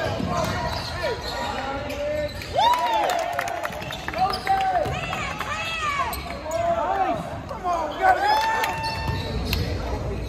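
A basketball bouncing on a hardwood gym floor, mixed with many short, rising-and-falling squeaks from sneakers on the floor, during fast play in an echoing gym.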